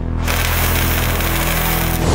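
Loud sound-design sting for a logo animation: a dense, noisy rush over low sustained tones that has begun abruptly and holds steady, growing louder at the end.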